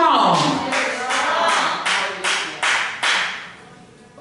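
Hand clapping: a run of about seven sharp claps, roughly two a second, stopping about three seconds in.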